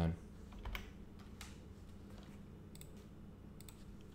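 A few faint, scattered computer-keyboard clicks over a steady low hum.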